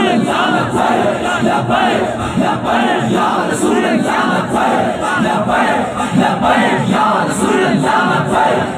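A large crowd of men shouting slogans together, loud and without a break.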